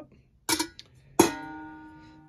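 Chrome metal bowl knocked as it is put down, then struck again a little over a second in and left ringing with a clear metallic tone that fades slowly.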